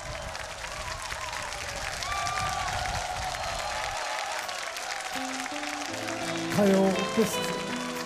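Large outdoor audience applauding for the first half. About four seconds in, a short music sting with clear stepped notes begins and grows louder toward the end.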